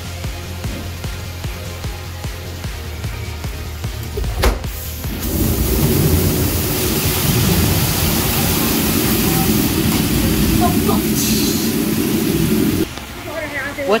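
Staged dynamite-blast sound effect of a mine attraction, set off by a blasting plunger: a sharp bang about four seconds in, then about seven seconds of loud rumbling noise that cuts off suddenly. Background music plays throughout.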